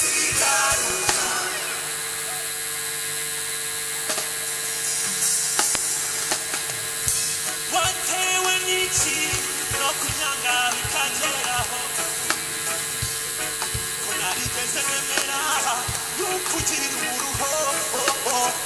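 Live band music with a long held chord, voices singing over it.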